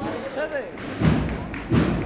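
Bass drum of a cornet-and-drum procession band beating at a slow walking pace, two heavy beats about three-quarters of a second apart, with people talking over it.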